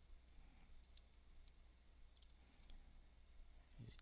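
Near silence with a few faint, scattered clicks of a computer mouse.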